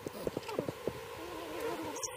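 A swarm of honeybees buzzing in flight. In the first second several bees pass close by, each with a brief buzz that rises and falls in pitch, over a steady wavering hum.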